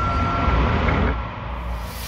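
Sound effects of an animated logo intro: a deep rumble under a noisy haze, with a faint steady high ringing tone that fades out about a second in.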